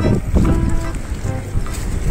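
Wind buffeting the microphone in a steady low rumble, with faint voices and a few held tones in the background.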